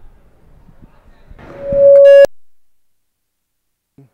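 PA microphone feedback: one steady, single-pitched tone that swells quickly to a loud peak over about half a second and cuts off abruptly about two seconds in.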